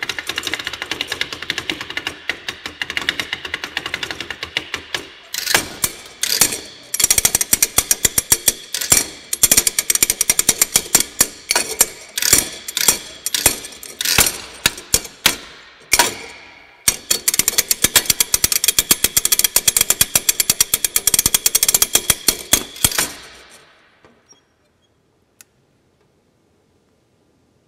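A wearable metal-and-wood sound sculpture played by hand as a percussion instrument: dense, fast runs of rattling and scraping strikes with a metallic ring. There are short breaks about five and sixteen seconds in, and the playing stops a couple of seconds before the end.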